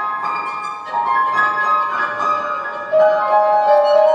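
Violin and piano playing a contemporary classical duo piece. The violin bows held notes that change pitch roughly every second, with the piano beneath, and a louder, lower sustained violin note comes in about three seconds in.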